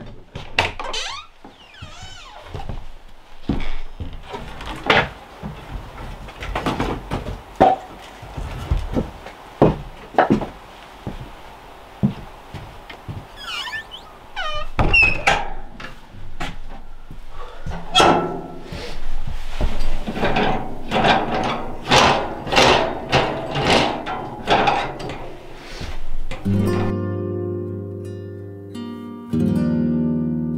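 Irregular knocks and clatters of handled objects, with a few brief squeaks partway through. Gentle plucked-string music begins near the end.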